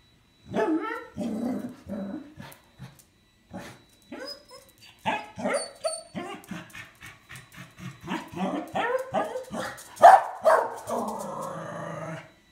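Corgi barking and yipping in repeated quick runs of short calls, loudest near the ten-second mark.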